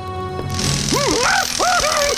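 Cartoon soundtrack with background music. About half a second in, a crash sound effect starts as a door is smashed open and carries on as a hiss of noise. Then comes a run of short rising-and-falling cartoon cries.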